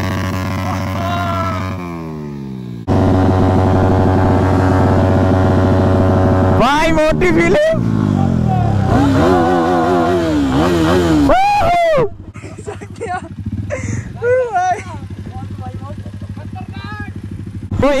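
Motorcycle engine held at high revs for a burnout, jumping suddenly louder about three seconds in and staying steady for a few seconds. It is then revved up and down before dropping back to a low idle about twelve seconds in.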